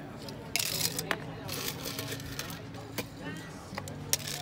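Ice cubes tipped from a metal scoop into a cocktail glass, clattering in several short, sharp bursts.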